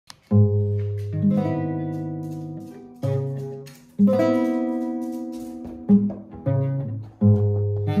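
Classical guitar played slowly and freely: about seven chords struck a second or so apart, each left to ring and fade before the next.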